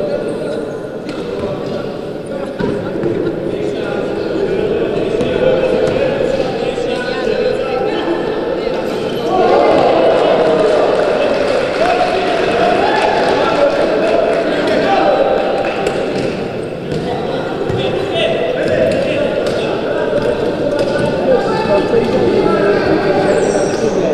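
Echoing sports-hall sound of a wheelchair basketball game: a basketball bouncing on the hardwood court under a constant din of shouting and chatter from players and benches, which gets louder about nine seconds in.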